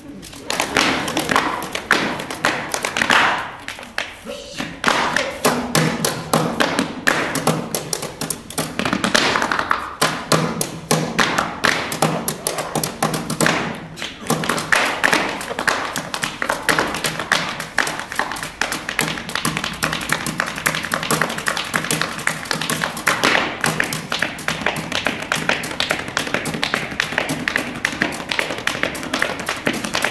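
Fast rhythmic percussion on a wooden chair: drumsticks striking the chair's frame together with hand slaps on the body, a dense run of sharp taps and thumps.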